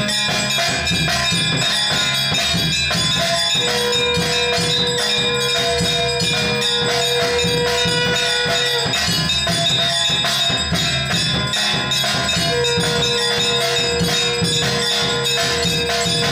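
Temple aarti music: bells ringing rapidly over drums and jingling percussion. A steady held tone sounds from about four seconds in to about nine seconds, and again from near the end.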